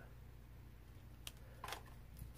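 Faint handling of a clear acrylic stamp block as it is pressed on paper and re-inked on an ink pad, over a low room hum; two small clicks come in the second half.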